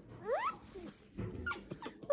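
Baby making a short rising squeal about a quarter second in, then a few soft brief vocal sounds near the end.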